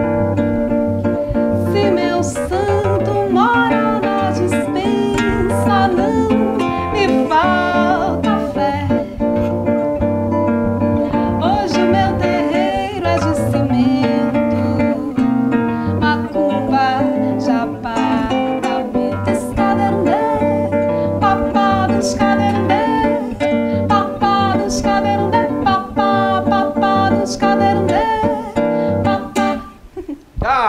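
A woman singing a song live to a nylon-string classical guitar played by hand, with a bending, sustained vocal melody over the plucked and strummed guitar. The song ends just before the end.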